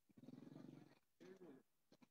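Near silence, with faint, indistinct voices of people talking nearby, twice.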